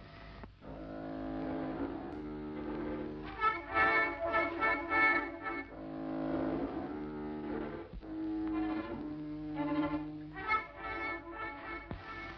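Orchestral film score: low bowed strings hold long notes, with short runs of higher repeated notes about three seconds in and again near the end.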